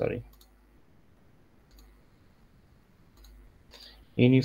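A few faint computer mouse clicks, scattered singly over quiet room tone.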